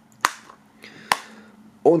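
Two sharp plastic clicks from a Blu-ray case being handled, about a quarter second in and again about a second in.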